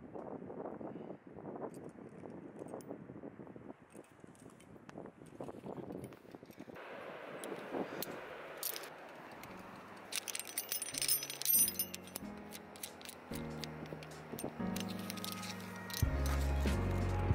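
Aluminium carabiners and quickdraws clinking and rattling as they are handled on a climbing harness, with a cluster of sharp clinks about two-thirds of the way through. Background music runs underneath, with a stepping bass line in the second half.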